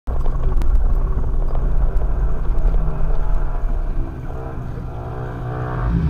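Off-road vehicle's engine running with a steady low rumble, heard from inside the cab; it eases off a little about four seconds in and builds again near the end.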